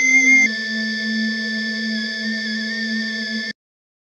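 A sampled music loop in E-flat minor played from a held key in Logic Pro's Quick Sampler with forward looping on. It sounds as a steady, held pitched tone that shifts slightly about half a second in and cuts off suddenly when the key is released, about three and a half seconds in.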